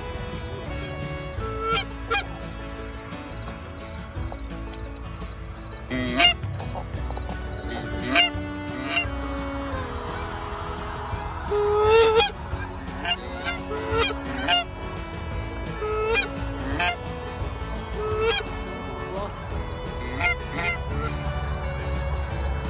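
Geese honking: a long string of short honks, some of them loud and sharp, spread through the whole stretch.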